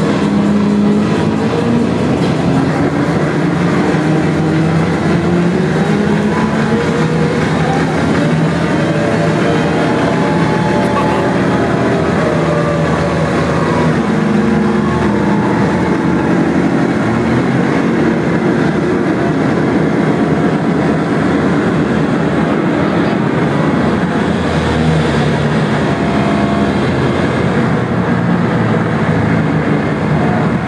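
Loud live electronic music through a club PA, recorded on a phone with poor, distorted sound: a dense, sustained synth wash with lines that glide up in pitch and no clear beat.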